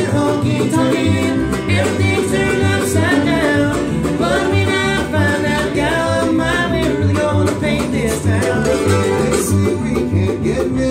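Bluegrass band playing live: fiddle, mandolin, acoustic guitar and upright bass, with the bass plucking a steady beat and a man singing the melody over them.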